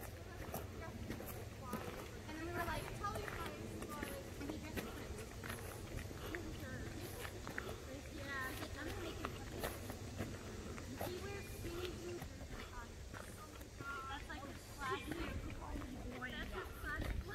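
Footsteps on a dirt forest trail, with faint distant voices and short high chirping calls now and then, more of them near the end.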